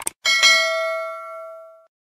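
A mouse-click sound effect, then a single notification-bell ding that rings and fades out over about a second and a half.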